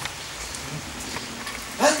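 Steady rain falling, an even hiss. A man's voice starts near the end.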